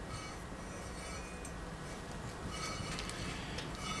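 Faint metallic clicks and scraping of a 10 x 1.0 mm hand tap being spun by hand through freshly cut threads in a cast iron exhaust manifold, over a steady low hum.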